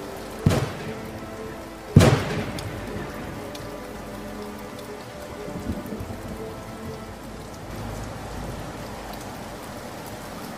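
Steady rain with two sharp thunder cracks, about half a second and two seconds in, the second louder and rolling off into a rumble, under faint background music.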